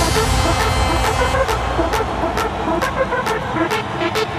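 Electronic dance music in a breakdown with the kick drum dropped out. A hiss runs under a sharp snare or clap hit about twice a second and short stabbed synth notes.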